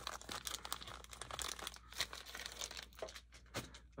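Plastic soft-bait packages crinkling and rustling as they are handled, with irregular small crackles throughout.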